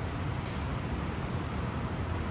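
Steady city traffic noise: an even low rumble of road vehicles with no single event standing out.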